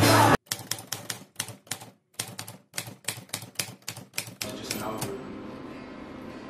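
A quick run of sharp clicks, about four or five a second and unevenly spaced, with a short break about two seconds in. Loud band music cuts off suddenly just before the clicks start, and the clicks give way to faint room tone near the end.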